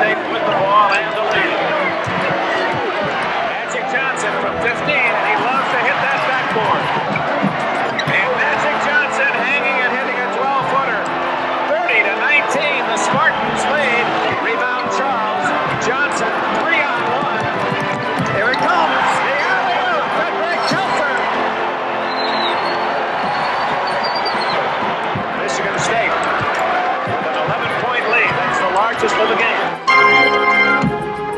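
Sound of a basketball game in an arena: the crowd's steady noise with many voices, and the ball bouncing on the court in frequent short knocks.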